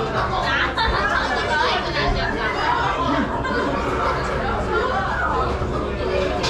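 Indistinct chatter of voices in a restaurant dining room, going on steadily with no clear words.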